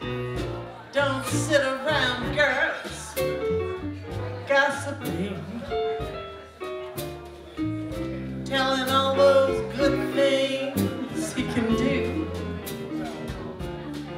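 Live band playing a song: keyboard, drum kit with cymbal strikes, and electric bass under a shifting melodic line.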